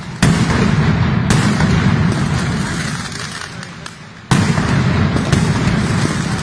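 Mascletà fireworks: loud aerial bangs bursting overhead, in two pairs about a second apart, each pair followed by a heavy rumble that slowly dies away over a few seconds.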